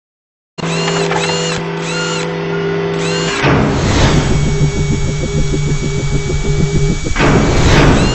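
Intro sound-effect sting: a steady mechanical whir with repeated rising-and-falling whistling sweeps. A little over three seconds in, a whoosh gives way to a fast rhythmic mechanical pulse, about four beats a second. Another whoosh comes near the end.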